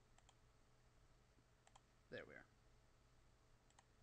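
Faint computer mouse clicks, coming in quick pairs three times over near silence, as points for a knife cut are placed in Blender.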